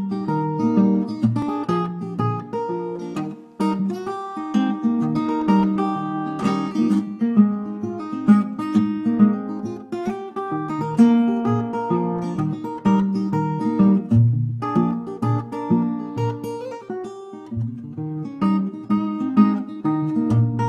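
Vintage Gibson L-00 acoustic guitar picked in a country-blues style, a steady flow of plucked bass and treble notes making up the instrumental intro before the vocal comes in.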